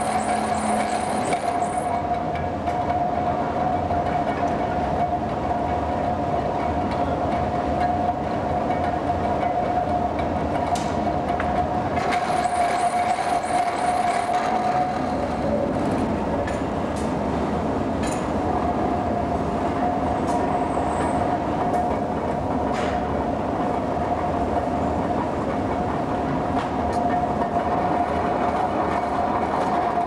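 Rolling mill running while a hot iron blank is rolled out: a loud, steady mechanical drone with a continuous whine from its electric drive, and occasional sharp knocks of metal on metal. The whine fades for a few seconds about halfway, then returns.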